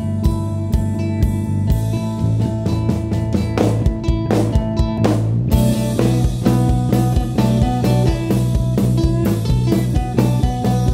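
Live rock band playing unplugged: acoustic guitars, electric bass and drum kit keep a steady beat. A run of quick drum strokes about four to five seconds in leads into a fuller, louder passage with cymbals.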